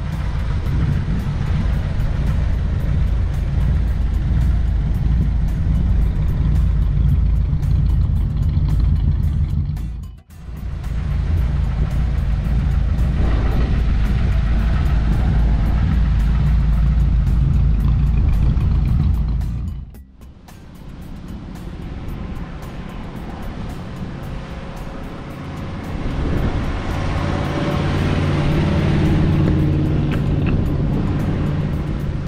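1953 Ford Crestline's 239 cubic inch flathead V8 running with a steady low rumble, cut into three stretches by brief drops. It is quieter in the last third, then grows louder near the end as the car drives off.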